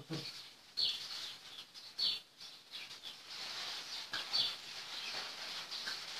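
A bird chirping: a few short, high chirps a second or two apart, over a steady background hiss.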